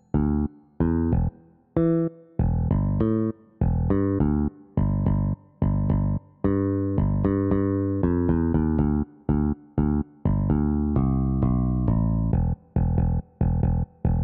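MIDI-sequenced bass guitar line playing single plucked notes in a rhythmic pattern. The notes are short and separated by gaps at first, then from about six seconds in they become longer and more connected.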